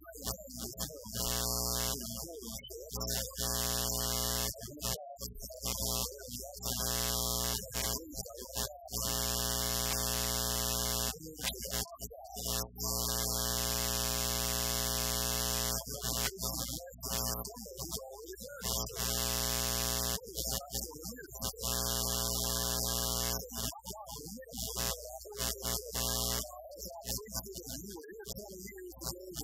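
Loud steady electrical buzz on the sound system, a fixed stack of pitches like a held synthesizer chord, dropping out briefly every few seconds. A man's voice is faint beneath it.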